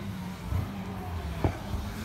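Touring race car engine heard from a distance as the car runs along the circuit: a steady low drone, with one short sharp sound about one and a half seconds in.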